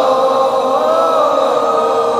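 Concert crowd singing a slow wordless melody together without the band, long held notes that glide from one pitch to the next.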